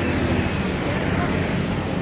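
Motorcycle engine running at a steady low note, with a constant hiss over it.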